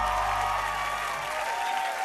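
Audience applauding and cheering as the song's last low chord rings out and fades away a little after a second in.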